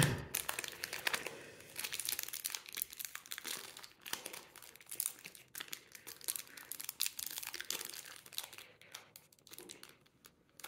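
Foil booster-pack wrapper crinkling and crackling as it is handled and worked open by hand, a dense run of small crackles that thins out near the end.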